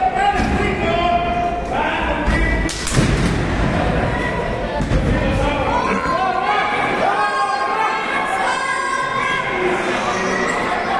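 Wrestlers' bodies hitting the boards of a wrestling ring. The loudest is a single heavy slam about three seconds in, heard over voices shouting in a large hall.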